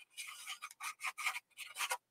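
Small paintbrush scrubbing paint around on a white plate palette, mixing purple with white: a run of short, irregular brushing strokes with brief gaps between them.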